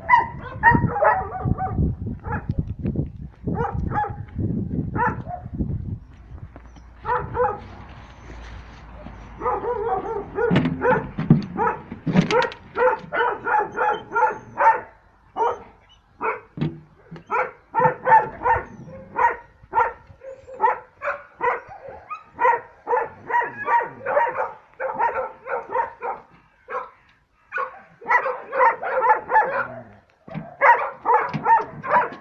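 Wolf yelping: runs of short, high yelps several a second, with pauses between the runs.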